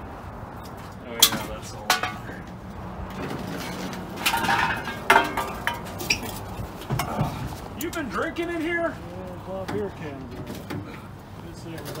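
Metal knocks and clinks as a truck's rear bench seat is worked out through the cab's rear door, with a few sharp knocks and a clattering stretch about halfway through.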